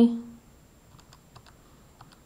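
Faint, separate clicks of buttons being pressed on a Casio ClassWiz scientific calculator as a sum is keyed in.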